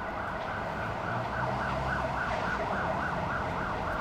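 An emergency vehicle's siren sweeping up and down in pitch, quickening to about four sweeps a second in the second half, over low street-traffic noise.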